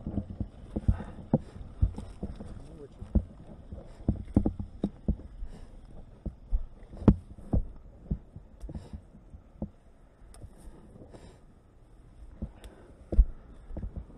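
Irregular thuds and clunks as a stuck dirt bike is wrestled about on loose rock, the loudest about seven seconds in, with no engine running.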